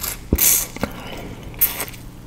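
Close-up chewing and crunching of peeled raw sugarcane, the fibrous stalk cracking between the teeth. There is a loud crackling crunch about half a second in, a sharp click, and a second loud crunch near the end.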